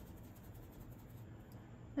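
Faint scratching of a paintbrush working acrylic paint, over a low steady room hum.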